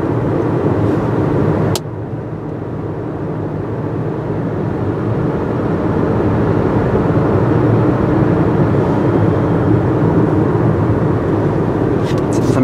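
Steady road and engine rumble heard inside a moving car's cabin. A sharp click comes a couple of seconds in, where the noise drops a little, and then it slowly grows louder again.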